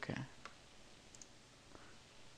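A few faint, sharp clicks of a computer mouse, spaced well apart, over quiet room tone.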